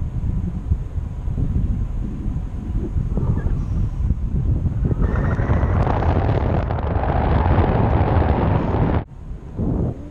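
Wind buffeting an action camera's microphone held out on a selfie stick in paraglider flight: a steady low rumble that swells into a louder, hissier rush about halfway through, then drops off suddenly about a second before the end.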